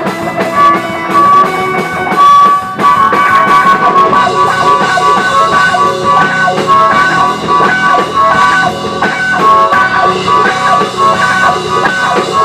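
Live blues-rock band playing: amplified harmonica held close to the microphone plays held notes over electric guitar and a drum kit. The playing grows busier about four seconds in.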